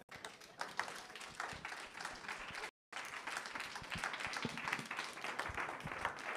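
Audience applauding: a dense patter of many hands clapping, which cuts out completely for a moment about halfway through.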